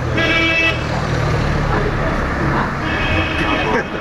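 Street traffic noise with a vehicle horn honking: a short honk right at the start and a fainter, longer one about three seconds in.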